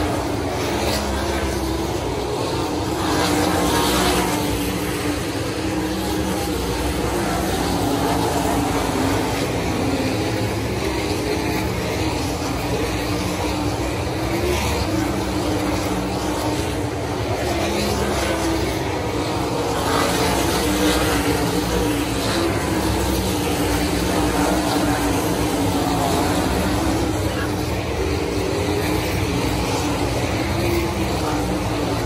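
A field of 410 sprint cars racing, their methanol-burning V8 engines running flat out in layered overlapping engine notes. The sound swells as cars pass close, about three seconds in and again around twenty seconds.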